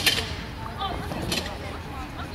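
Short voice calls from people on the field, with two brief hissy bursts at the start and about a second and a half in, over a steady low rumble.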